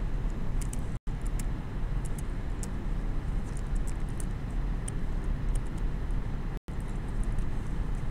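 Steady low rumble of classroom room noise with faint light ticks of a stylus on a tablet screen as handwriting is added. The sound drops out completely for an instant twice, about a second in and at about six and a half seconds.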